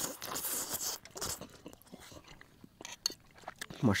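People eating noodle soup: a slurp from the bowl in the first second, then soft chewing and small clicks of spoons against bowls.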